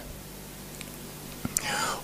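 A pause in a man's speech: faint steady hum of room tone with a couple of small clicks, then a short breathy sound from the speaker near the end as he draws breath to go on.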